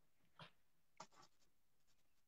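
Near silence with a few faint, brief scratchy sounds: a paint sponge dabbing and blending paint on a furniture piece.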